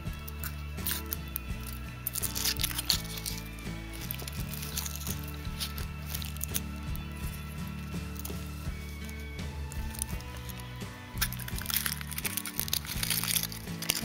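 Background music, over which the foil wrapper of a Kinder Surprise chocolate egg crinkles as it is peeled off, with a spell of crinkling near the start and another near the end.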